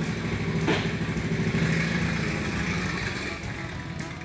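Small vehicle engine running with a steady low pitch, getting somewhat quieter toward the end.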